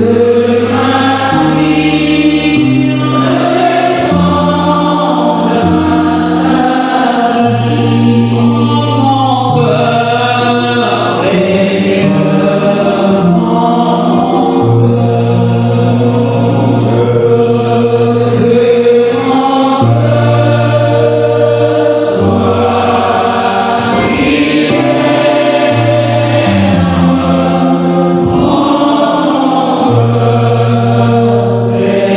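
Voices singing a slow hymn in chant style, choir-like, with long held notes that move in steps.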